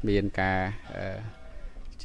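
A man talking into a handheld microphone, with one drawn-out syllable and a fainter stretch after about a second; a low steady hum runs underneath.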